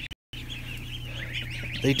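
A large flock of ducklings peeping together, a dense chorus of high cheeps, over a steady low hum from an exhaust fan. The sound cuts out briefly just after the start, and a man's voice comes in near the end.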